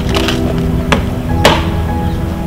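Ceremonial band music holding steady sustained notes, with two sharp knocks about a second and a second and a half in from the guard of honour's drill.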